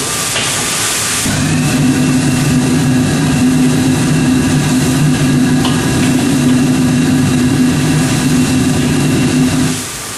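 Commercial wok range's burner and blower running: a steady low motor hum with a roar that starts about a second in and cuts off suddenly just before the end. Under it is the hiss of stock boiling in the wok.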